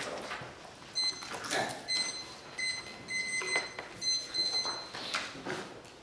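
Electronic timer beeping in short, evenly repeated high tones, marking that the speech time is up. Scattered rustling and knocks from people moving.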